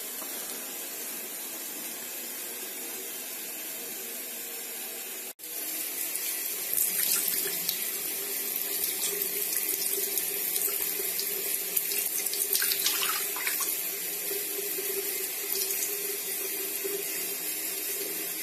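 Tap water running into a sink, with splashing as a glass mug is rinsed under it. The sound breaks off for an instant about five seconds in and comes back louder, with more splashing.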